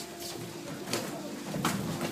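Sparring strikes in Muay Thai: gloved punches and kicks smacking on guards and bodies, three sharp hits about two-thirds of a second apart, over a steady low tone.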